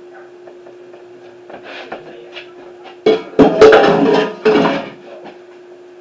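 A stainless steel mixing bowl is scraped out and knocked against a metal loaf pan: a few soft scrapes, then about three seconds in a couple of seconds of loud, ringing metallic clatter. A faint steady hum runs underneath.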